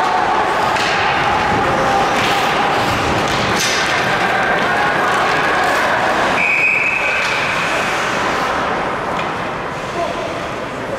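Ice hockey play in an arena: skates, sticks and puck knocking over steady background noise. About six and a half seconds in, a referee's whistle blows one steady note for about a second, stopping play.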